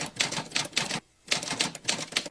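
Typewriter sound effect: a quick run of key clacks, about six a second, with a short pause about a second in.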